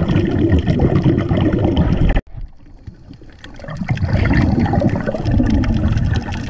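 Underwater water noise recorded in a sea cave: a dense rushing with many small crackles. It cuts off suddenly about two seconds in and builds back up a second or so later.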